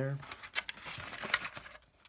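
Thin clear plastic blister packaging crinkling and clicking as it is handled, for about a second and a half, then stopping near the end.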